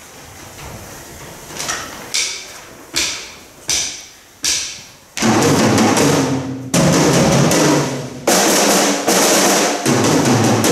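Several Sonor drum kits played together live: for the first five seconds, single accented hits ring out and fade about once every 0.7 seconds. Then all the kits come in loudly together with dense rolls, broken by a few short gaps.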